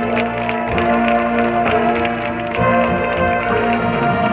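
High school marching band playing: brass holding chords over regular percussion hits, the chord changing about two and a half seconds in.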